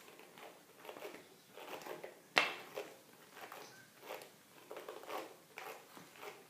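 Detangling brush drawn through curly hair in repeated short rustling strokes, about two a second. A sharp click about halfway through is the loudest sound.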